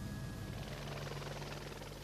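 Jet (turbine) helicopter in flight: steady rotor and engine noise, shifting slightly in tone under a second in.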